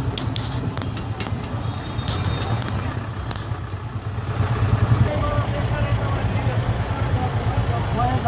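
Busy street sound: a steady low vehicle rumble with people's voices, the talking growing clearer in the second half, and a few short clicks early on.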